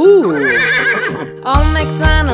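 Horse whinny: a long, wavering neigh that rises and then trills, over a children's song backing track. The music's bass comes back in about a second and a half in.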